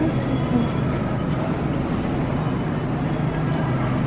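Steady supermarket background noise: a continuous rolling rumble under a low hum, the sound of a shopping cart being pushed over the store floor amid the refrigerated produce cases.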